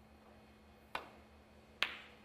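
Snooker shot: the cue tip clicks against the cue ball about a second in, then a little under a second later a second, sharper click as the cue ball strikes the object ball on a long pot at a red.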